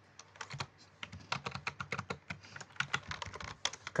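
Typing on a computer keyboard: an irregular run of quick keystrokes with short pauses between bursts.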